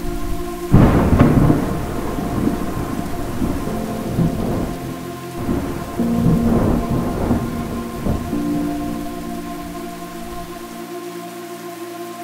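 Thunder rumbling over steady rain, the thunder loudest about a second in and swelling again around six to seven seconds. Soft sustained music tones run underneath.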